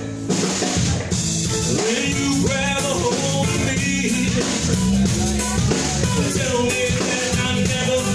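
Live band starting a song about a third of a second in, then playing at full tilt: a drum kit keeping a steady beat with snare and bass drum under guitar and bass.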